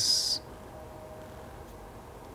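A brief hiss at the very start, then quiet studio room tone with a faint steady hum.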